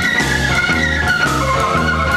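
Instrumental break in a late-1960s psychedelic blues-rock recording: held organ chords over a bass line that steps from note to note, with drums and no singing.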